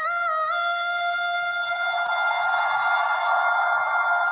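A female pop singer holding one long high note in a live concert recording, with a small step in pitch at the start and then steady, over a noisy wash that swells beneath it.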